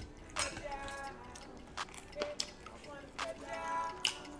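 Knife and fork clicking and scraping on a ceramic plate as a waffle is cut, a few separate clicks, over faint background music with held notes.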